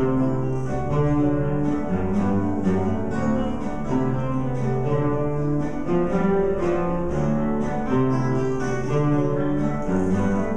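Ensemble of classical guitars playing a repeating pattern of plucked notes over sustained low bass notes, each held about a second.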